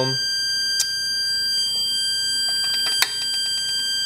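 Steady high-pitched whine with overtones from a pulse-driven bi-toroid transformer: the metal of the transformer's ferrite cores and windings singing, an annoying noise. Two sharp clicks, about a second in and near the three-second mark.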